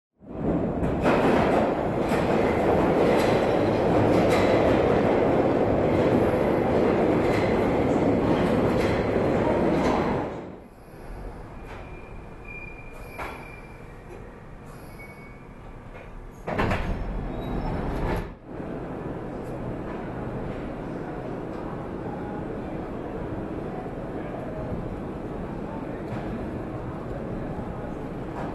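London Underground train heard from inside the carriage: loud, steady running noise for about ten seconds, then an abrupt drop to a quieter hum, and a brief loud burst a few seconds later. After that comes a steadier, quieter urban background.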